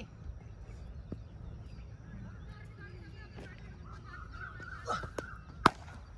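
A single sharp, loud crack of a cricket bat striking the ball near the end, with a smaller knock about half a second before it.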